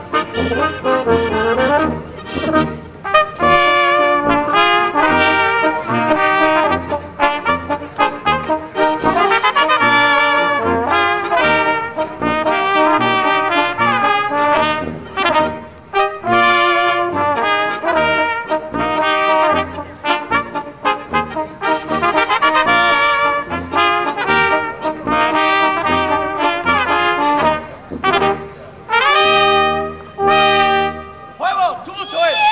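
Austrian Tanzlmusi folk brass ensemble playing a dance tune: flugelhorn and trumpets carry the melody over a tuba bass line that repeats in a steady oom-pah beat.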